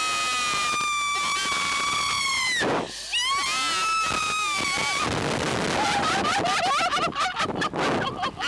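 Women screaming on a slingshot ride as it launches: one long held scream, a brief break a little before three seconds in, then a second long scream. For the last few seconds there is an even rush of wind noise, with short cries and gasps.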